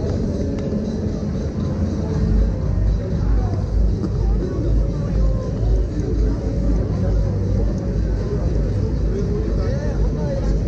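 Busy pedestrian street: crowd chatter with faint music under a heavy, uneven low rumble of wind buffeting the microphone.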